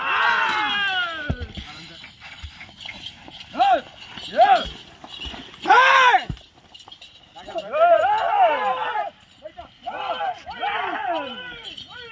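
Several men shouting loud, rising-and-falling calls to drive a pair of Ongole bulls pulling a load. The calls come in overlapping bursts every second or so, with the loudest about halfway through and a couple of dull thumps early on.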